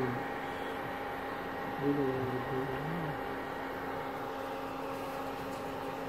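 Steady electrical hum with a few constant tones, typical of an induction cooktop and its cooling fan running under a pressure cooker. A short, low murmured voice comes in about two seconds in.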